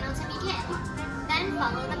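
Children's voices and chatter in a busy play area, with music playing in the background.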